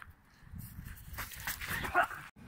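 Hurried footsteps and clothing rustle of a person running off across grass, with a short voiced cry near the end.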